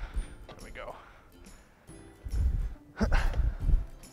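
Red plastic party cups being gathered and set down on a metal tabletop, with a few deep knocks and rattles about two and three seconds in, over background music.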